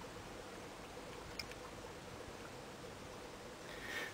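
Faint, steady hiss of a small oxyhydrogen (HHO) gas burner flame burning into a glass bottle held over it.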